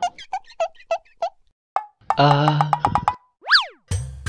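Cartoon-style comedy sound effects: a quick run of about eight short plinking notes, then a drawn-out 'aah', then a whistle that slides up and straight back down near the end.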